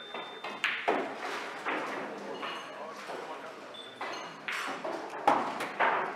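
A pool shot: sharp clicks of the cue tip striking the cue ball and of billiard balls colliding, then a dull thud about five seconds in, over the background talk of a busy pool hall.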